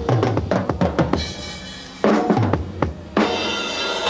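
Drum kit played in fast fills, the strikes stepping down in pitch across the toms, with cymbals ringing between the runs. A crash cymbal hit a little after three seconds rings on through the end.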